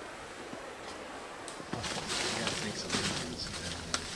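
Quiet outdoor background, then from about two seconds in, low, indistinct men's voices.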